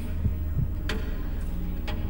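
Game-show countdown sound: a steady low throbbing hum with a heartbeat-like pulse and a few soft knocks, running while the five-second answer clock counts down.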